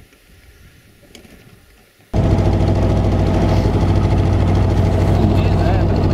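Low, faint sound for about two seconds, then a sudden jump to a boat's outboard motor running at a steady pitch, loud and close as heard from inside the aluminium boat.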